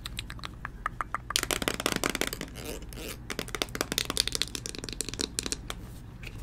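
Close-miked clicking and crackling from hands handling a plastic makeup tube, growing dense about a second and a half in, with sharp taps through it.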